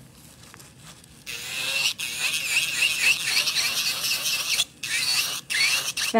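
Electric nail drill with a small white bit running fast under the tip of an artificial nail, cleaning out beneath it: a high grinding whine with a wavering squeal that starts about a second in, with a few brief breaks.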